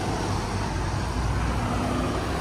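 Road traffic: a steady low rumble of cars and buses passing on a city street.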